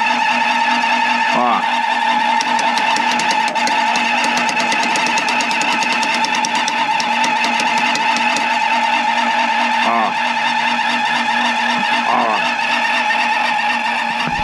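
Wall-mounted heater unit's fan running with a steady hum and whine, although it has been switched off. Brief voice-like sounds come in faintly about a second in and again near ten and twelve seconds.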